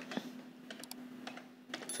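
Computer keyboard typing: a few scattered quick key clicks over a faint steady hum.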